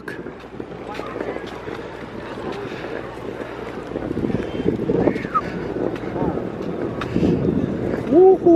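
Background chatter of people's voices under steady wind noise on the microphone.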